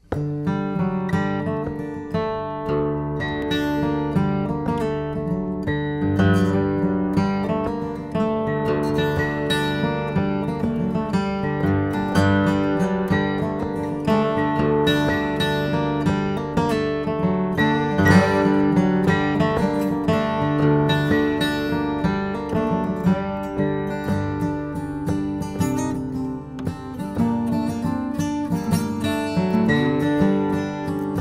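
Acoustic guitar and Weissenborn lap slide guitar playing a traditional Swedish polska together, the acoustic strummed and picked under the Weissenborn's melody.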